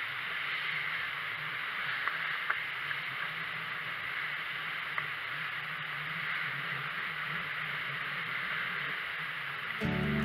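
Steady rushing noise of water and wind around a yacht under sail, with a few faint ticks. Acoustic guitar music starts right at the end.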